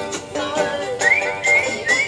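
Instrumental interlude of a Hindi film song: plucked-string backing with a whistled melody that comes in about a second in, in short high phrases that slide up into each note.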